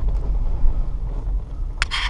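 Cab interior noise of a 1999 GMC Suburban driving slowly: a steady low rumble of engine and road. A brief sharper sound comes near the end.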